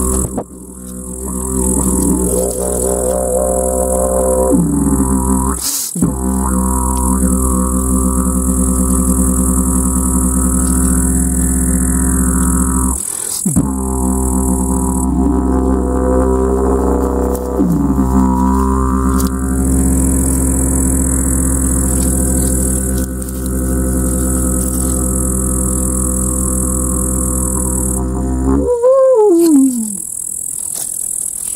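Homemade wooden box didgeridoo, a glued box with an internal channel widening toward the opening, played as a continuous low drone with overtone sweeps shaped by the mouth. The drone breaks briefly for breaths about six and thirteen seconds in, and it closes with a louder call that rises and falls in pitch.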